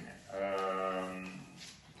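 A man's drawn-out hesitation sound, a flat held 'mmm' or 'eee' lasting about a second, heard through the video-call loudspeaker in the room.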